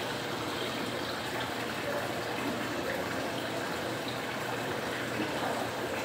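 Steady rush of running water in a koi pond.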